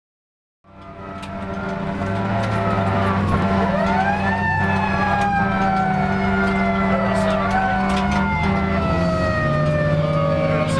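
Emergency vehicle sirens wailing, several overlapping, each rising in pitch and then slowly falling, over a steady low hum; the sound fades in about half a second in.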